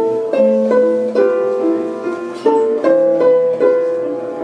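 Russian balalaika playing a melody in distinct plucked notes, a few a second, with piano accompaniment.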